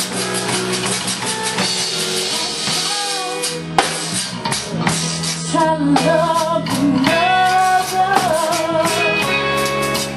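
Live zydeco band playing a slow number, with drum kit, guitar and accordion. A woman sings over it in the second half.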